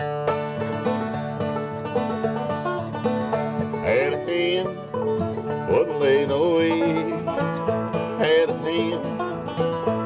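A five-string banjo and an acoustic guitar playing an up-tempo bluegrass tune together, with a man's voice singing from about six seconds in.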